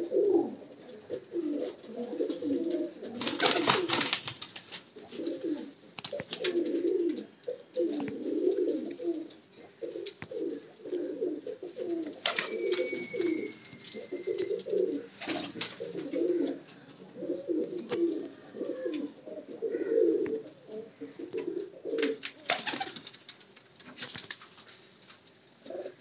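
Qasuri pigeons cooing over and over, several birds overlapping, with a few sharp clatters among them.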